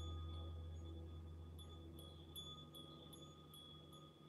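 Faint, sparse high chime notes ringing at irregular moments over a low hum that slowly fades away.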